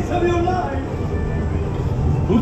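Radiator Springs Racers ride vehicle moving along its track with a steady low drone, under the ride's show audio: a voice briefly at the start and background music.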